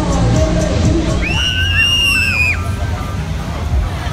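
Loud fairground ride music with a heavy bass beat. From about a second in, a long high-pitched scream rises, holds for over a second and drops away, with a second wavering voice beneath it: riders shrieking on a Miami ride.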